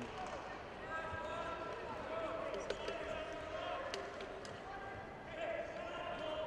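Indistinct voices of coaches and spectators calling out in a gymnasium, with a few faint knocks.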